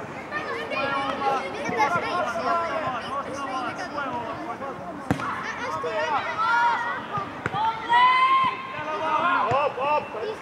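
Many overlapping voices of young footballers and people on the touchline shouting and calling during play on an open pitch, with one sharp knock about five seconds in.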